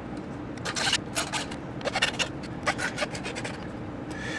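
A half-round hand file scraping the rough edges of a 3D-printed ABS plastic part in a few short, irregular strokes with pauses between, cleaning off the sharp bits left by printing.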